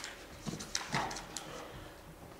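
A few brief clicks and soft knocks, with a faint murmur, over the quiet room noise of a meeting chamber.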